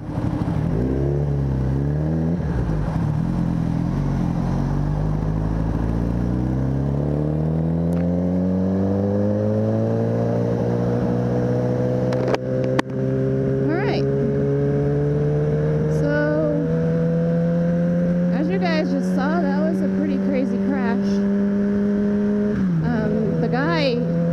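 Sport motorcycle's engine heard from the rider's seat, pulling away and accelerating, its pitch climbing steadily for about ten seconds and then holding at cruise. The pitch drops once near the end as the throttle eases or the bike shifts, with wind and road noise underneath.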